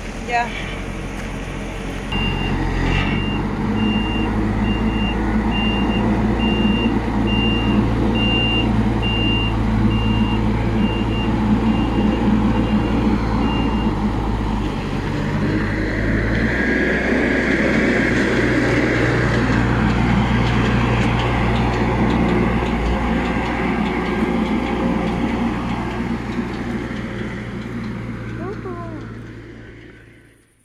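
A heavy vehicle's diesel engine runs with its reversing alarm sounding a single high beep about once a second for some twelve seconds. A rushing hiss comes about halfway through, then the engine sound fades near the end.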